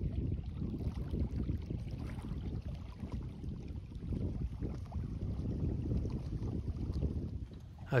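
Wind buffeting the microphone in a gusty low rumble, with small waves lapping on a rocky shore.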